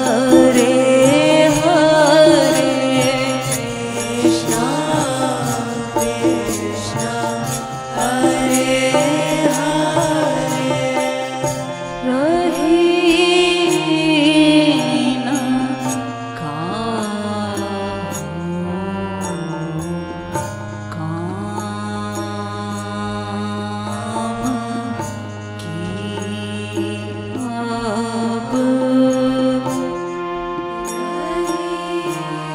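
Devotional kirtan music: a singer's melodic line with vibrato over harmonium's sustained notes. From about halfway the music gets quieter and the held notes carry more of it.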